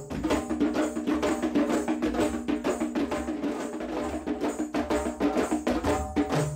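Several djembes played by hand together in a fast, dense rhythm of strokes, with a low held note underneath.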